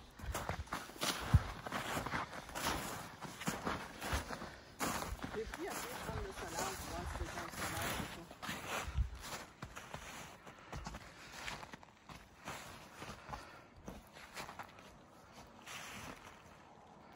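Footsteps crunching through deep snow, irregular steps that grow quieter and sparser over the last few seconds.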